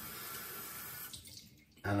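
Water running from a bathroom sink tap, then turned off about a second in.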